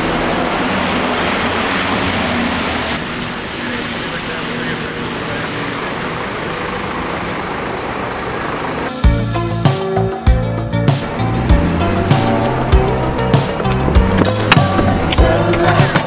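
Loud street traffic noise as a double-decker bus passes close by, with a few brief thin high squeals midway. About nine seconds in, background music with a steady beat takes over.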